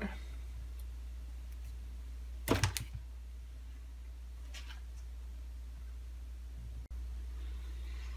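A short clatter of handling about two and a half seconds in, the radio's power plug being pulled from the socket, over a steady low hum.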